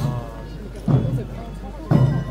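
Korean chwita processional band playing marching music: a big drum struck about once a second, with a pitched melody line over it.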